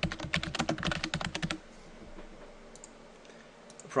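Computer keyboard typing: a fast run of keystrokes for about the first second and a half, then a quieter pause with a few scattered keystrokes.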